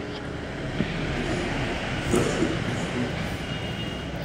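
Steady background noise with no clear pitch, with a faint brief voice-like sound about two seconds in.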